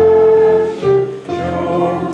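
A group of voices singing a hymn together, accompanied by a digital piano playing sustained chords. The sound drops briefly about a second in, then picks up again on the next chord.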